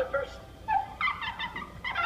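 A cartoon character's voice making short, high, warbling pitched bursts with no clear words, like giggling.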